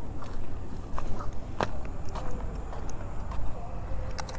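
Footsteps walking up to a motorcycle, with scattered sharp clicks and knocks over a low rumble; the engine is not running.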